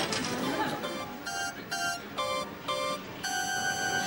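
Electronic bleeps from an amusement arcade machine: short pitched beeps alternating between two notes, about two a second, starting about a second in, then a long steady tone near the end.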